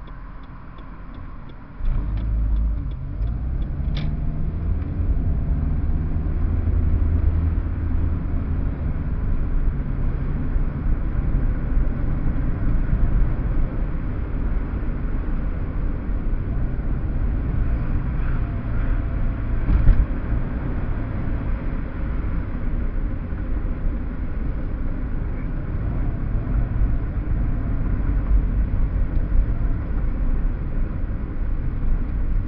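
Low rumble of a car's engine and tyres heard from inside the cabin: quiet while the car stands, then louder from about two seconds in as it pulls away, staying steady while it drives down a city street.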